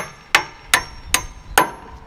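Claw hammer driving a nail into the end of a two-by-six wooden rim board: five even strikes about 0.4 s apart, each with a short metallic ring.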